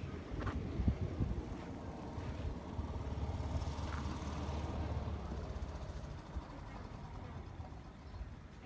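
A golf cart's engine running steadily as it passes, dying away about two-thirds of the way through.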